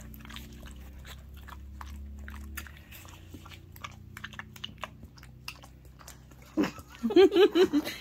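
A Rottweiler–shepherd mix dog licks peanut butter out of a small plastic cup: a fast, irregular run of wet licks and mouth smacks. A steady low hum stops about two and a half seconds in. Near the end a person laughs loudly.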